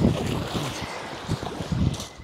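Wind buffeting the microphone over small waves lapping on a pebble shore.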